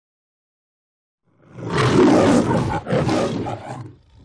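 A loud animal-like roar that starts after about a second and a half of silence, breaks off briefly near three seconds in, then resumes and fades near the end.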